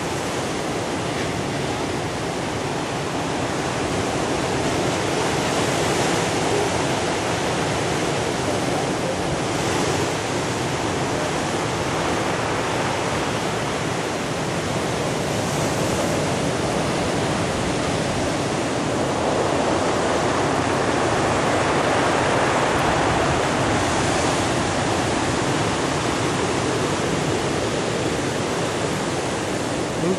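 Heavy ocean surf breaking and washing up the beach: a continuous rush of water that swells a little every few seconds.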